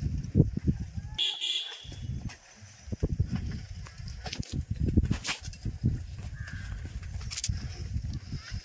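Rumbling wind and handling noise on a phone microphone carried by someone walking, with scattered clicks, and a brief high call about a second in.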